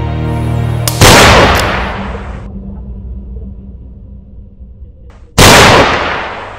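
Two loud handgun shots about four and a half seconds apart, each dying away over a second or more in a long echoing tail. The first comes about a second in, over background music.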